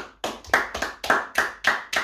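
Two people clapping their hands in a brisk, even rhythm of about three to four claps a second.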